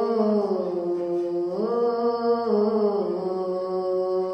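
A young boy's voice chanting the azan, the Islamic call to prayer, in long drawn-out melodic notes. The pitch rises about one and a half seconds in and falls back a second later, and the note carries on past the end.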